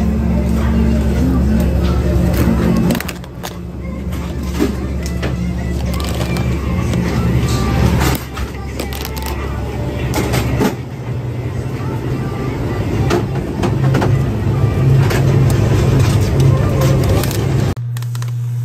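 Supermarket ambience: music playing over sustained low notes that change every few seconds, with indistinct voices and frequent small clicks and clatter.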